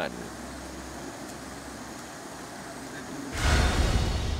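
Outdoor ambience of news field footage: a steady low hum and hiss. About three seconds in it gives way to a much louder low rumble.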